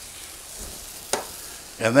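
Steady sizzle of food frying in a pan on a gas stove, with one sharp click about a second in.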